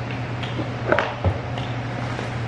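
A steady low hum fills the room, with a few short clicks and small mouth sounds as a bite of cake is taken off a fork and eaten.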